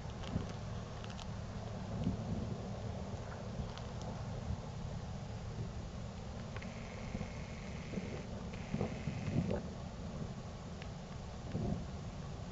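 Distant New Year's fireworks: scattered dull booms and a few faint sharp pops over a steady low outdoor rumble. A thin steady high tone sounds twice in the middle.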